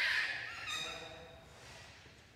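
A newborn baby crying just after birth: a loud, high wail at the start, then a shorter, steadier cry about two-thirds of a second in that fades away.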